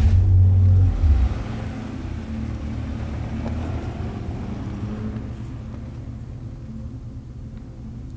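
Mazda Xedos 6 car engine: a deep low rumble, loudest for about the first second, then settling into a steady low running sound that slowly fades.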